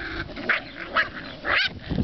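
Puppies yipping while they play, with about three short, high yips in quick succession.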